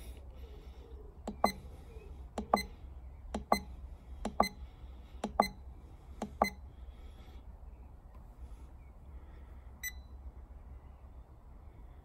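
Buttons on a myenergi Zappi EV charger's keypad being pressed, each press giving a short, sharp beep. Six quick double presses come about a second apart, then a single one near the end, over a low steady hum.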